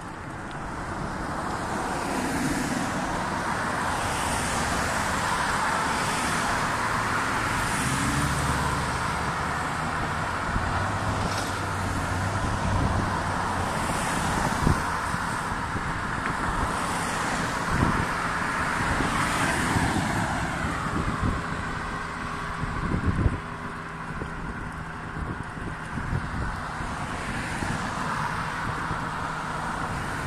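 Road traffic on a multi-lane street: a steady noise of car tyres and engines that swells as cars drive past, with a few sharp knocks in the middle and later part.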